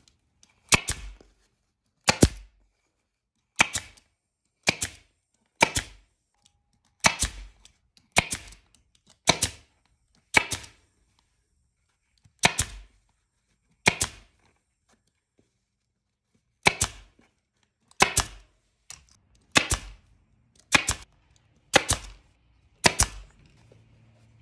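Power stapler firing staples one at a time through rug fabric into a wooden footstool frame: about seventeen sharp shots, roughly one a second, with two short pauses.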